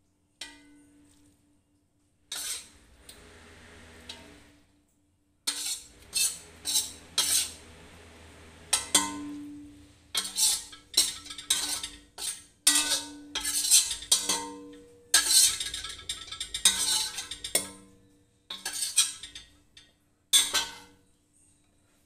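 Metal spatula scraping and clanking against a stainless steel wok in a run of quick strokes with short pauses, as the last of the stir-fried noodles are scooped out; the wok rings under the strokes.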